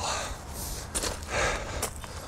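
A man breathing hard in about three noisy breaths while scrambling up a steep, overgrown slope, with scuffing and rustling from his movement and a short crackle near the end.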